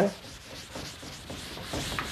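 An eraser rubbing across a teaching board, wiping it clean, a little louder toward the end.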